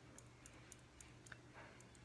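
Near silence, with faint light ticks at uneven spacing: fingertips tapping on the side of the hand at the karate-chop point during EFT tapping.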